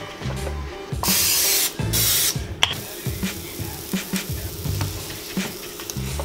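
Two short hisses of an aerosol cooking spray onto the open waffle iron's plates, about a second and two seconds in, each about half a second long, followed by a few light clicks.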